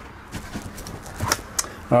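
A few light clicks and rustles of movement through a caravan's interior, with footsteps and camera handling over a low room hiss.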